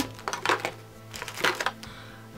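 A few light clicks and knocks of makeup products being put away and rummaged through, several in the first second and a half.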